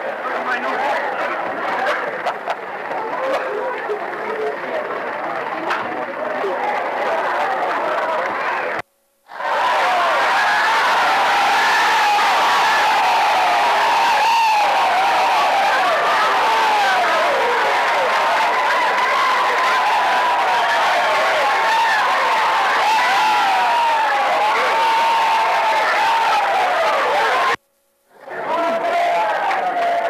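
Ballgame crowd noise: many voices chattering and calling out at once, with no clear words. The sound cuts out briefly twice, about nine seconds in and again near the end.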